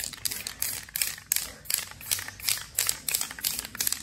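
Aerosol spray-paint can sprayed in a run of short, quick bursts of hiss, about three a second, laying down royal blue paint.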